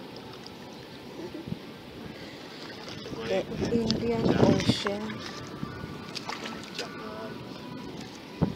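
A person's voice for about two seconds near the middle, the loudest sound here, over a steady background hiss of wind.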